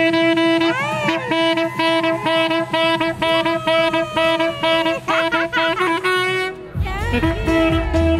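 Tenor saxophone playing a melody with bends and slides over a backing track with a steady beat. Near the end the music changes and a heavier bass comes in.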